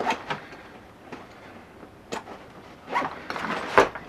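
A nylon backpack being handled: its zipper is drawn around a compartment and the bag is folded open flat, with scattered clicks, knocks and fabric rustle. It gets louder about three seconds in, with the sharpest click near the end.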